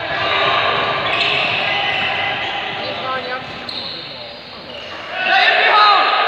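A handball bouncing on a sports-hall floor during play, with players' and spectators' shouting voices echoing in the large hall; the shouting grows louder near the end.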